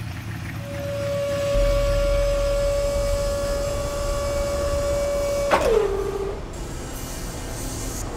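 Rotary two-post vehicle lift's electric hydraulic pump motor running with a steady whine as it raises the car. About five and a half seconds in it stops with a click, and the pitch falls as it winds down.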